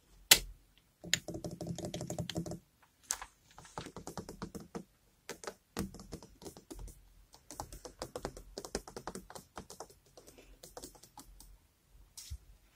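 Fingers tapping on hard household objects in quick, irregular runs of taps, opening with one sharp, loud tap. The dense run of taps from about one to two and a half seconds in has a ringing tone.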